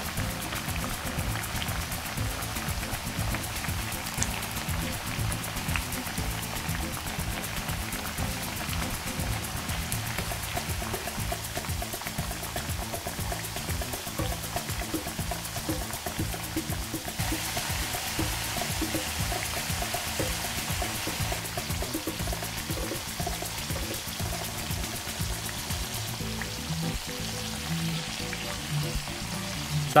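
Sweet potato chunks deep-frying in hot oil: a steady bubbling sizzle, heard under background music.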